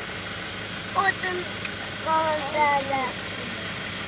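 Car engine idling, a steady low hum inside the cabin, with a quiet voice speaking briefly about a second in and again between two and three seconds.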